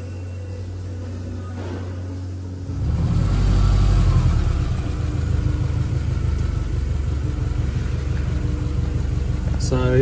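A steady low hum, then about three seconds in a car engine starts to be heard idling steadily with a low rumble.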